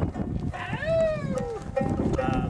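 Plucked notes on a small long-necked lute, broken by a single long high-pitched call that rises and then falls, lasting about a second.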